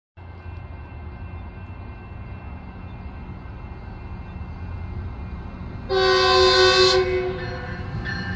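Metrolink commuter train approaching with a low rumble that slowly grows louder, then a loud blast of its horn about six seconds in, lasting about a second before carrying on more softly.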